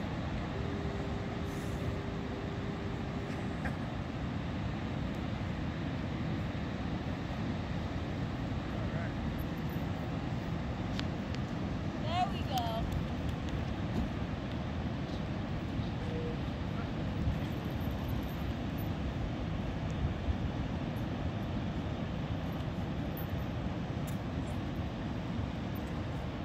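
Ocean surf: a steady, even rush of waves breaking along the beach.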